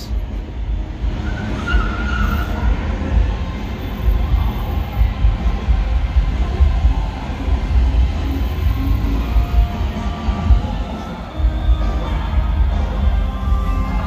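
City street ambience: cars idling and moving at the kerb, with music playing in the background and a heavy low rumble throughout.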